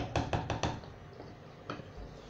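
A quick run of about five light knocks in the first second, then a single knock near the end, from something being handled at the stove.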